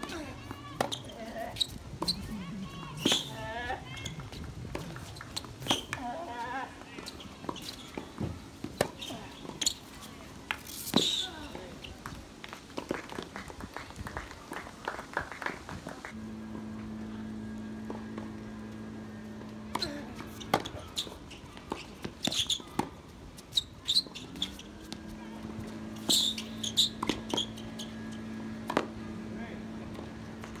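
Tennis play on an outdoor hard court: the sharp pops of racket strikes and ball bounces, scattered through two points, with voices in the background. A steady low hum comes in about halfway and rises slightly in pitch near the end.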